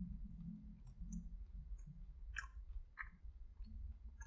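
Faint chewing: scattered small wet mouth clicks and smacks, two of them a little stronger about two and a half and three seconds in, over a low steady hum.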